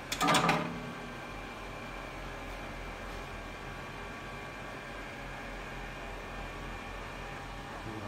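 UDetach dental model separation machine running through its separation cycle, a steady hum with several steady tones over it. A brief louder sound comes just after the start.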